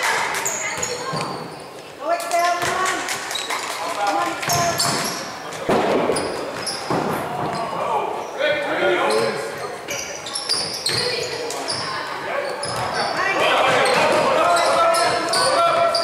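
A basketball bouncing on a hardwood gym floor during play, with players and onlookers shouting and calling out, echoing in the large hall. The voices grow louder near the end.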